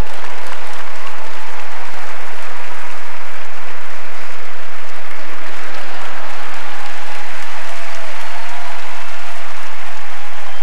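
Large theatre audience applauding, starting suddenly and keeping up a steady clapping.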